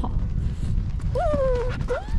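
Alaskan malamute vocalizing: a short whining howl about a second in that jumps up and then slides slowly down in pitch, and a second one starting near the end, over a steady low rumble.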